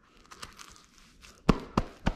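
Velcro hook-and-loop belt strap being pressed and fastened into place: a soft rasping, then a run of sharp crackles starting about a second and a half in.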